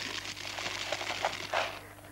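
Small chocolate cereal balls pouring into a tall glass jar: a dense rattle of pieces hitting the glass and each other, tailing off near the end.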